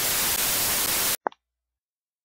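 Television static sound effect: a steady hiss of white noise that cuts off suddenly a little over a second in, followed by one short blip.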